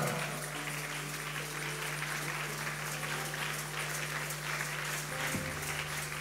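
A congregation applauding steadily in a large hall, with soft music of sustained held notes underneath.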